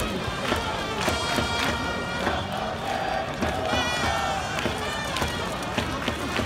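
Japanese baseball cheering section playing the batter's fight song: trumpets and drums on a steady beat of about two a second, with the crowd chanting along.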